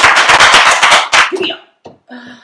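Two people clapping their hands in quick, fast applause, which stops about a second and a half in.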